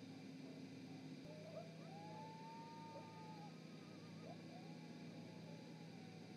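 Faint, distant howling: several long, wavering calls overlap and rise and fall in pitch, starting about a second in, over a steady low electrical hum. A single click comes just before the calls begin.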